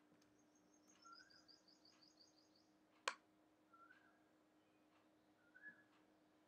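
Faint bird chirping: a quick run of about a dozen high chirps over the first three seconds, and a short lower call repeated every second or two. A single sharp click about three seconds in, over a faint steady hum.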